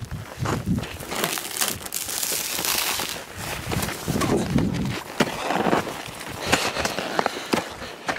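Irregular crunching and scraping of snow with sharp clicks, as a climber on a rope is hauled up and scrambles over the snowy lip of a crevasse.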